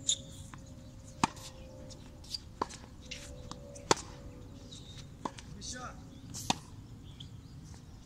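Tennis ball hit back and forth with rackets in a baseline rally on a hard court: a string of sharp pops from racket hits and ball bounces, about one every second. The three loudest come from the nearby racket, about two and a half seconds apart.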